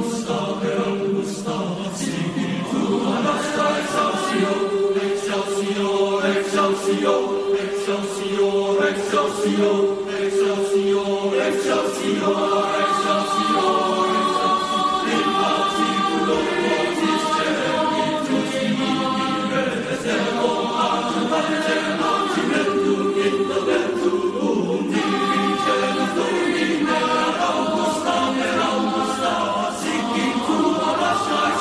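A boys' choir singing sustained chords in several parts, the voices moving from note to note together.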